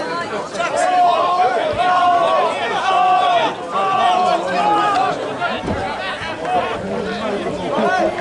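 Several people shouting and chattering at once during rugby play, with a run of about six short shouts at the same pitch in the middle.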